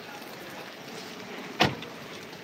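A steady background hiss, with a single sharp knock about one and a half seconds in.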